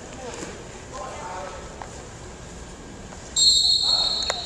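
A referee's whistle blown once, a short shrill trilling blast near the end, over faint voices echoing in a gym.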